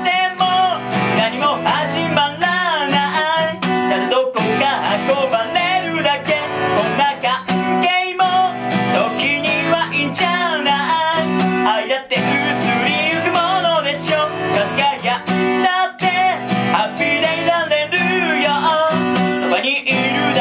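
Acoustic guitar strummed under a singing voice in a Japanese pop song. The sung lines pause briefly about every four seconds.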